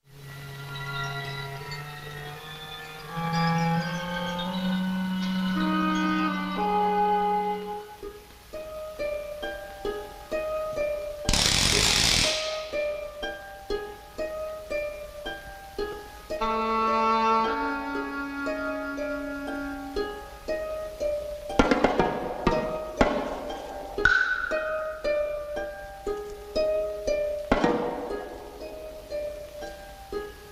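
Horror film score: sustained low notes climbing in steps, then short plucked notes repeating a figure. A loud rushing burst comes about twelve seconds in, and a few sharp hits come near the end.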